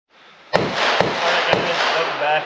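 Three sharp bangs about half a second apart, over a steady rushing noise.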